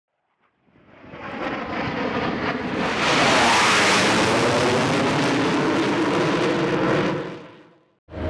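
Aircraft passing by: its noise swells in over the first few seconds, is loudest in the middle, then fades away near the end.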